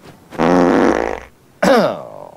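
A man's voice making a loud buzzing, fart-like mouth noise that lasts about a second, then a short falling vocal sound near the end.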